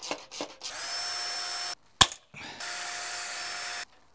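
Cordless drill running in two steady bursts of about a second each, with a high whine, drilling holes in the grille for rivets. A single sharp click falls between the bursts.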